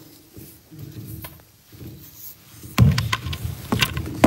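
Pages of a Bible being leafed through close to the microphone: faint rustling, then a run of sharp clicks and rustles from about three seconds in.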